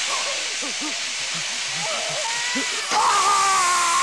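Horror film soundtrack: a steady hiss with wavering, voice-like moans underneath, then about three seconds in a louder held tone with overtones comes in.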